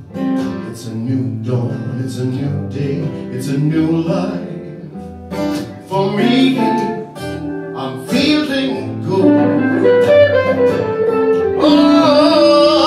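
Live acoustic duo: acoustic guitars strummed and picked, with a man's voice singing held, bending notes over the last few seconds.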